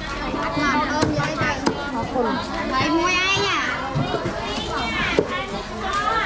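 Several people talking at once in a busy market, one voice high and swooping about halfway through, with a few sharp knocks near the start.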